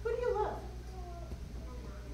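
A young child's brief high-pitched vocal sound, held then sliding up and down in pitch, followed by a softer falling bit of voice.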